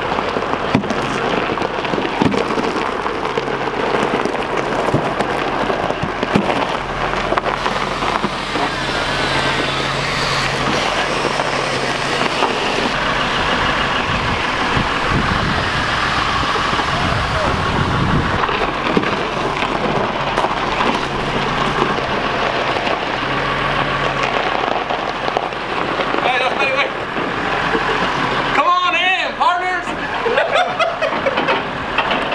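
A forklift's engine running with a steady low drone under a continuous rushing noise, with indistinct voices; the sound changes abruptly near the end.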